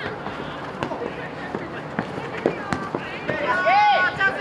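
A futsal ball being kicked on artificial turf, a few sharp knocks amid players' calls. Near the end comes a loud, drawn-out shout from a player.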